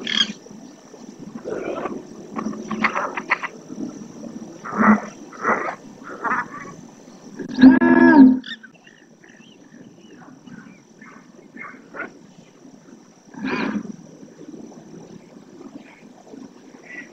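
Ducks quacking now and then in short, separate calls, with one longer and louder call about eight seconds in. A faint steady high whine runs underneath.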